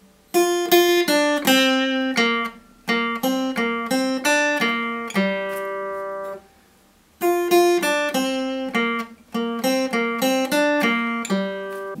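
Acoustic guitar picking out a single-note melody, the vocal line of a song's pre-chorus, one plucked note at a time. It comes in two phrases with a pause of about a second between them.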